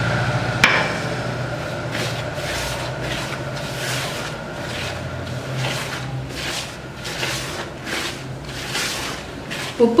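A hand rubbing oil into dry maida flour in a plastic bowl: soft scrubbing strokes of fingers through the flour, roughly two a second.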